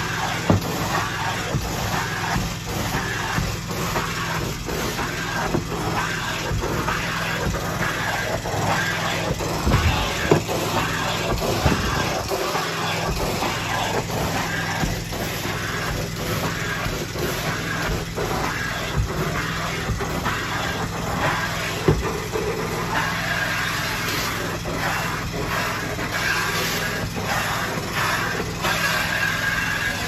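A steady mechanical hum over a constant hiss, the hum briefly dropping out about twelve seconds in.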